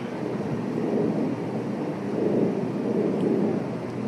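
Steady background rumble and hiss of a recorded interview room.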